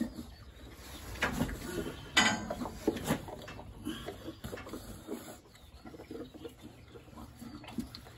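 A dairy cow held in a steel head bail while a calcium bolus applicator is worked into its mouth: scattered short knocks and rattles and brief sounds from the cow, strongest in the first three seconds.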